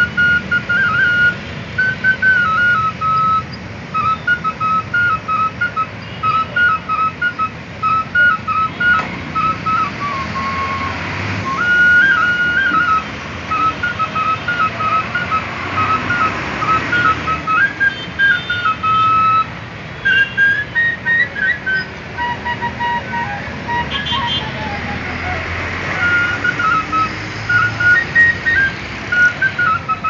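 Flute played solo, held upright: a simple melody of short notes stepping up and down, with a few longer held notes. Street traffic noise runs underneath.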